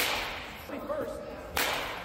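Baseball bat striking a ball twice, about a second and a half apart, each a sharp crack with a short ringing tail in the cage.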